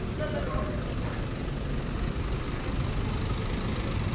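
City street traffic: a steady rumble of car engines close by, with faint voices of passers-by in the first second.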